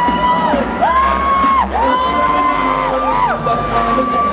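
DJ mix playing loudly over the hall's speakers, with a run of long held high notes that slide up at the start and drop off at the end, and whoops from the crowd.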